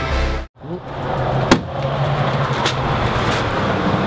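A short music jingle ends and cuts to silence about half a second in. Then comes steady outdoor background noise of road traffic with a low hum, broken by two sharp clicks.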